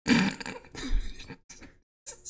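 A man clearing his throat in a couple of rough bursts, loudest at the start and again about a second in.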